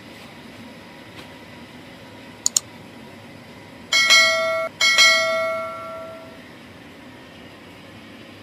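Sound effect of a YouTube subscribe-button animation: a quick double mouse click, then two chimes of a notification bell about a second apart. The first chime is cut off short and the second rings on and fades over about a second and a half, over a steady background hum.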